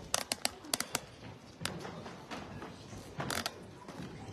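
Handling noise: a quick run of sharp clicks and knocks in the first second, one more a little later and another pair near the end.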